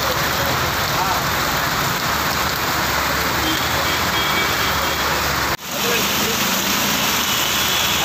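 Heavy rain pouring onto a road, a loud steady hiss, broken by a brief dropout about five and a half seconds in.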